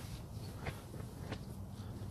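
Faint rustling and a few light clicks from fingers handling a hook and fluorocarbon hooklink, over a low, steady background rumble.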